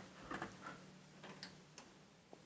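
Near silence with a few faint, irregularly spaced clicks over a low steady hum.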